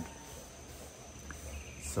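Insects singing in a thin, steady, high-pitched drone.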